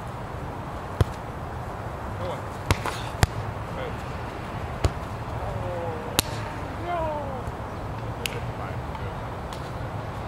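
A volleyball being struck during a rally on a sand court: about six sharp slaps of hands and forearms on the ball, irregularly spaced through the few seconds. A steady low outdoor rumble runs underneath.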